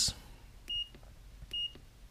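A handheld digital multimeter beeping as its rotary selector dial is clicked round to the capacitance setting: two short, high beeps about a second apart, each with a faint click of the dial.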